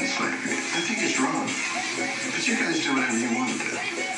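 A man speaking on television, heard through the TV's speakers, with music underneath.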